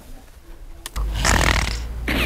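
A person snoring loudly, starting about a second in after a quiet moment.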